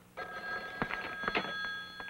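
Telephone bell ringing: a steady, continuous metallic ring that starts a moment in.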